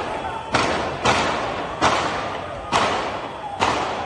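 A rapid series of five heavy explosion booms from the missile barrage, about one a second. Each hits suddenly and dies away in a long echo.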